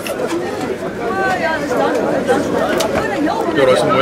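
Spectators' voices overlapping in chatter, with no single clear speaker.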